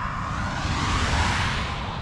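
A vehicle passing on the nearby road: a rush of tyre and air noise that swells to a peak about a second in and then fades, over a low wind rumble on the microphone.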